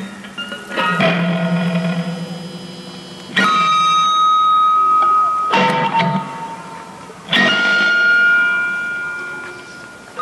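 Fender Telecaster electric guitar through a small Fender tube amp, played as free improvisation. Four sparse struck notes or chords come about two seconds apart, each left to ring and fade. A bright high note sustains over the second and the fourth.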